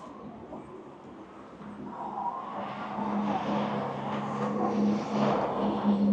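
A motor vehicle going by, its steady engine hum and road noise growing louder from about two seconds in.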